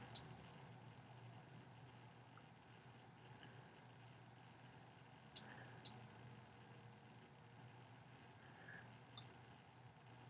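Near silence: faint room tone, with two sharp computer-mouse clicks about half a second apart just past the middle.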